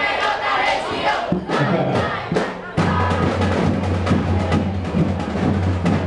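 Crowd voices, then about three seconds in a marching band strikes up with loud drums over a steady held low note.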